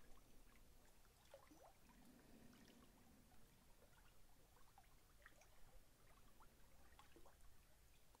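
Near silence, with faint small waves lapping and trickling among the stones at a rocky lakeshore, heard as scattered soft ticks and gurgles.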